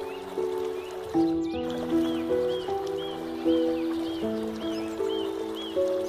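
Soft, slow instrumental piano music. Over it, from about two seconds in, a run of short high chirps repeats about three times a second.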